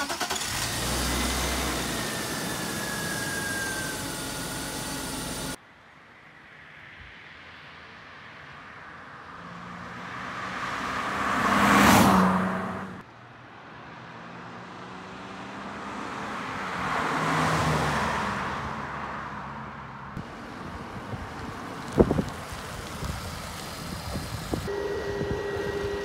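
1999 BMW 323is (E36) with its 2.5-litre inline-six engine running under the open hood, then the car driving past on a road twice, its sound swelling and fading as it goes by. The first pass cuts off suddenly at its loudest; a sharp click comes near the end.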